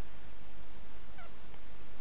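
Steady hiss with a low mains hum from the recording chain. A brief, faint pitched call comes about a second in.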